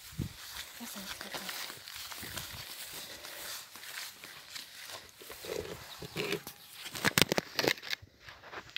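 Footsteps through grass with rustling handling noise, then a few sharp knocks and rattles near the end.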